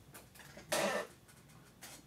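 A single short cough about three-quarters of a second in.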